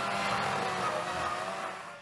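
Steady rushing noise of a fire being fought with a hose, with a faint steady hum underneath, fading a little near the end.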